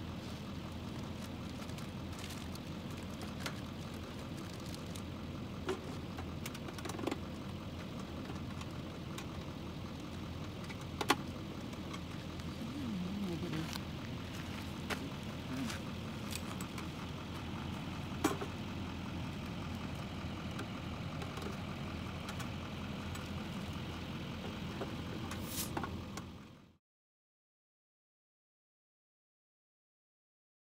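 A car's engine idling steadily, with scattered light clicks and knocks over it. The sound cuts off near the end.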